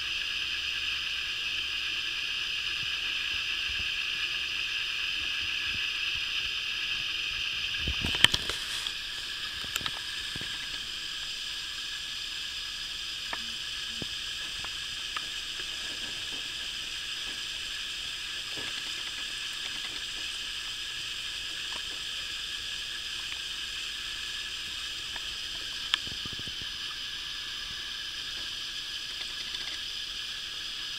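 Steady background hiss with a faint whine in it, broken by a brief bump about eight seconds in and a few faint clicks.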